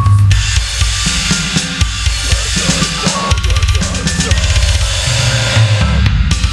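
Deathcore metal song in an instrumental passage: a drum kit playing fast bass-drum and snare hits over a low, heavy riff.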